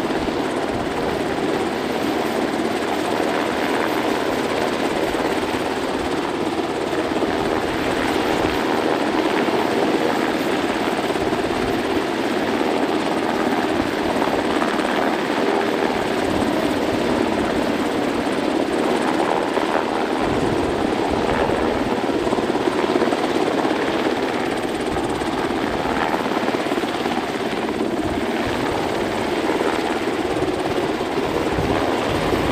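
UH-60 Black Hawk helicopter hovering overhead during a rescue hoist pickup, a steady, loud rotor and turbine noise.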